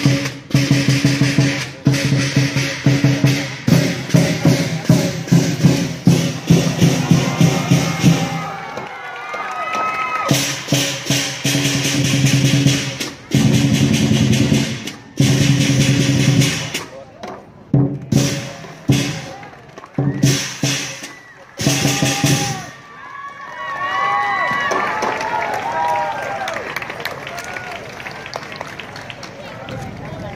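A lion dance percussion ensemble (drum, cymbals and gong) plays a fast, dense beat, then breaks into short bursts with pauses. A voice speaks in the gaps, mostly in the last several seconds.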